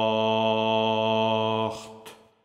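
Baritone voice holding the song's final low note steady on the vowel of 'Schacht', then cutting it off near the end with the hissing 'cht' consonant, which fades out in the room's echo.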